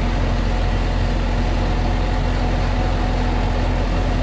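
A UD truck's diesel engine, heard from inside the cab, running steadily at a raised idle. It has just been restarted after a fuel filter change and is held at higher revs to push the air pocket out of the fuel line so it does not die.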